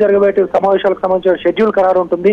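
Speech only: a news reporter talking continuously in Telugu.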